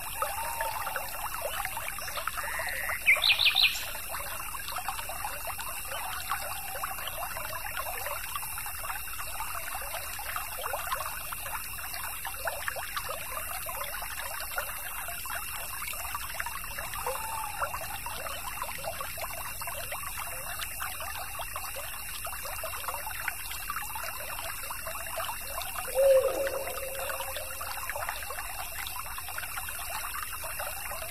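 A small stream trickling and bubbling steadily, with a bird call sweeping quickly up in pitch about three seconds in. Near the end a short, lower call stands out as the loudest moment.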